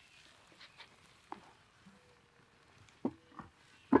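A terracotta flower pot, used as a cooking cover, handled and set down on a wooden block: mostly quiet, with a few light knocks of clay against wood, the loudest just before the end.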